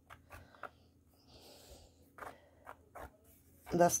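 Faint scattered clicks and soft knocks of a wooden stick stirring thick batter in a metal cake pan. A woman starts speaking near the end.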